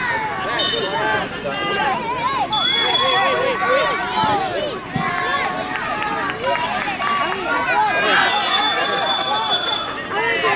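Many overlapping voices of children and adults shouting and calling out, with a whistle blown as a short blast about two and a half seconds in and a longer blast from about eight seconds in.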